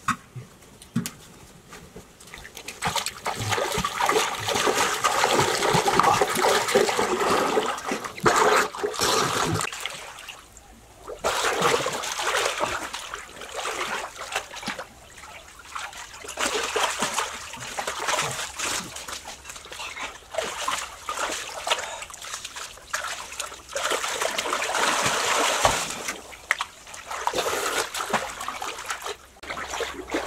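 Water splashing and sloshing in a small concrete-walled pool as people splash it with their hands, wade in and swim, in long stretches of splashing broken by a couple of brief lulls.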